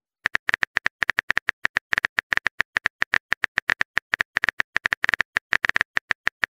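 Rapid keyboard typing clicks, as on a phone's on-screen keyboard, at about seven taps a second, starting about a quarter second in.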